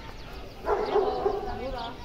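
Indistinct women's voices talking, starting a little under a second in, with no clear words.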